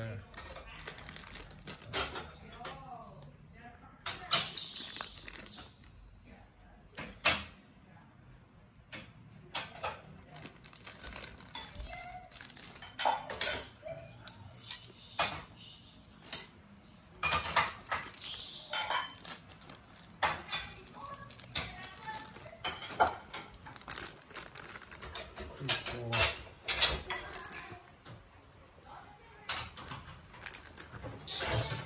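Metal spoon clinking and tapping against a hotpot and dishes: a scattered series of sharp clicks and knocks, with some voices in the background.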